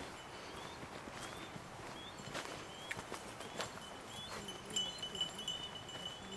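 Footsteps crunching irregularly over a dry dirt trail and forest litter. A faint short high chirp repeats every half second or so, and a clear high ringing tone sounds briefly about five seconds in.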